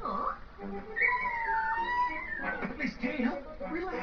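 Animated film soundtrack: music under wordless voice sounds, with a long, high, wavering cry about a second in, followed by a run of short vocal noises.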